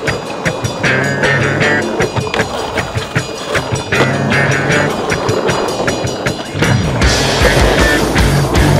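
Skateboard wheels rolling on asphalt and concrete under a music track with a steady beat. About a second before the end, a heavier low rumble comes in.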